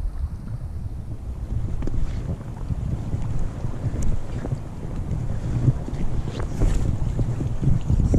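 Wind buffeting the microphone in an uneven low rumble, over the faint rush of a shallow creek, with a few light clicks about halfway through.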